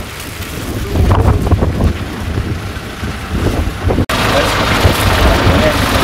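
Wind buffeting the microphone with a low rumble while a car drives slowly toward it over a dirt ground. About four seconds in, the sound cuts abruptly to a denser, steady outdoor noise with people's voices in it.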